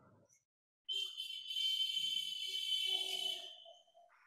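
A high, steady insect buzz, starting about a second in and fading out near the end.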